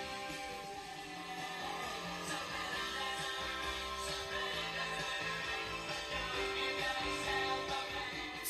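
Music with guitar, played by a surface exciter mounted on the back panel of an RCA STS-1230 speaker cabinet and heard through the cabinet's empty woofer opening. The cabinet panels, lined inside with sound deadener mat, resonate with the music and make the cabinet kind of sing. This is a cabinet-resonance test at a fairly loud −20 dB setting.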